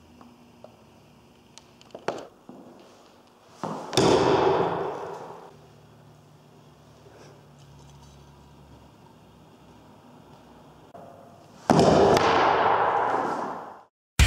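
Two heavy blows of a sword striking a plywood shield, about eight seconds apart, each a sudden loud hit that dies away over a second or two in a long echo; a lighter knock comes about two seconds in.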